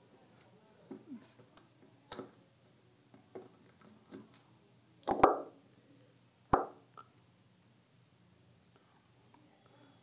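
Scattered small clicks and knocks from handling the disassembled webcam's circuit board and plastic parts. The loudest come as a cluster about five seconds in, with another sharp knock about a second and a half later.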